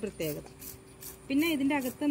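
A woman speaking in short phrases, with a quieter pause of about a second near the middle. A faint rapid high pulsing, about four a second, runs underneath.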